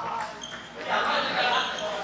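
Table tennis hall ambience: indistinct voices echoing around a large hall, with ping-pong balls bouncing on tables.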